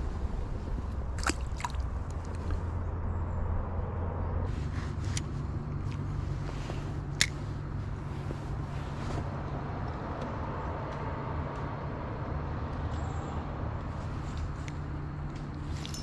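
Steady low hum of a small boat's electric trolling motor, its tone changing about four and a half seconds in, with a few light clicks.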